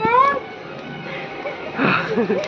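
A short, high-pitched vocal cry from a person right at the start, rising then falling over about half a second, followed by quieter background voices and a burst of noise just before speech resumes.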